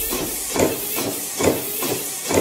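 Cartoon windshield-wiper sound effect: repeated swishes a little under a second apart, with no music under them.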